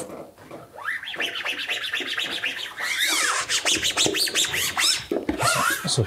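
A squeegee rubbing and squeaking in quick strokes over vinyl stencil film as it is pressed down onto a clear-coated carbon rear wing, the short squeaks rising and falling in pitch.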